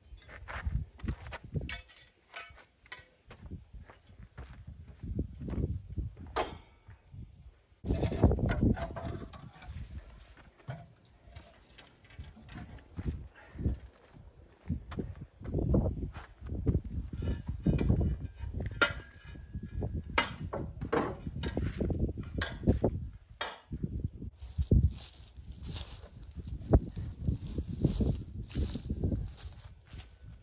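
Wooden folding chairs being picked up, folded and carried, with irregular knocks, clatter and footsteps on a concrete patio.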